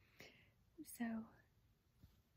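A woman's quiet voice saying a single drawn-out word, "so", after a soft breath.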